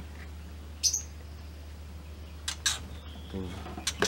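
A white-rumped shama (murai batu) giving a few short, sharp chirps: one about a second in and two close together past the halfway point, over a steady low hum.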